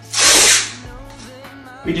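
Masking tape pulled off the roll in one short rip, about half a second long near the start, over quiet background music.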